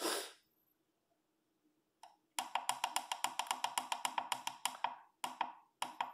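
Button beeps from an automatic chicken coop door controller's circuit board as its menu buttons are pressed. A single short beep comes about two seconds in. Then a fast, even run of beeps, about nine a second, lasts for a couple of seconds, as when a button is held down to scroll a value, and three more spaced beeps follow near the end.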